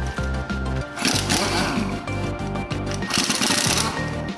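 Background music with a steady beat, over which a pneumatic impact wrench rattles in two short bursts on the car's wheel bolts, about a second in and again near the end.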